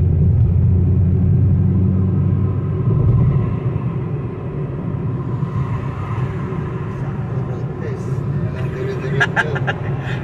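Car cabin noise while driving at highway speed: a steady low rumble of tyres and engine, heaviest in the first three seconds.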